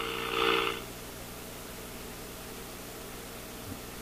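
A steady mid-pitched tone with hiss comes from the five-tube AA5 radio's speaker as it receives the signal generator's test signal during alignment. It stops just under a second in, leaving a low mains hum and faint hiss from the radio.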